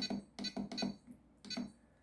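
RadioLink RC6GS V2 transmitter beeping at each press of its menu keys while scrolling the menu: a quick run of short beeps, then one more about a second and a half in.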